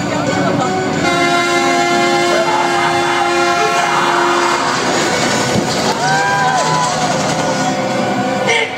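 A horn sounds one long blast of several steady notes at once, starting about a second in and lasting about three seconds. Near the end, a voice shouts over loudspeakers, over the steady din of the show.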